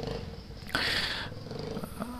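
Motorcycle engine idling, a low steady rhythmic rumble, with a short hiss just under a second in.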